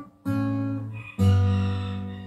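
Acoustic guitar: two chords sounded, one about a quarter second in and a louder one just after a second in, left ringing.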